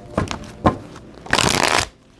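A tarot deck being shuffled by hand: a couple of soft taps and flicks of cards, then a quick dense burst of cards riffling through the hands about a second and a half in.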